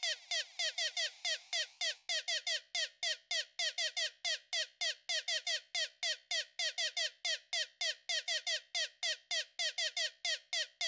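Novation Circuit groovebox playing a fast, even pattern of short synth notes, about five a second, each note falling in pitch. It sounds thin, with no bass or kick drum.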